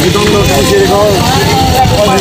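Several men's voices talking over one another, with a steady low rumble underneath.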